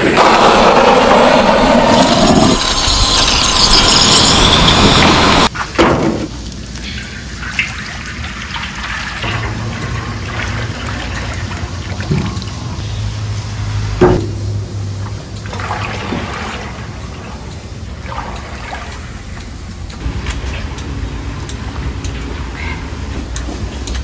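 A butane canister blowtorch's gas flame rushes loudly for about five seconds as it lights a stall burner, then cuts off abruptly. After that, and much quieter, cooking oil pours in a stream into a large steel frying wok, with a low steady hum and a few knocks.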